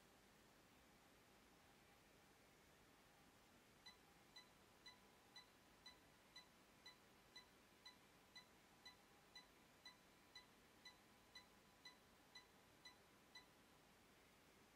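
Near silence broken by faint short beeps, about two a second, starting about four seconds in and stopping near the end: 1 kHz test-tone bursts from a Crown XLS 2000 amplifier bridged into a resistive load, driven into hard clipping during a dynamic-headroom power test.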